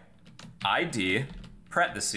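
A man's speaking voice, with a few computer keyboard keystrokes as code is typed, mostly in the first half second.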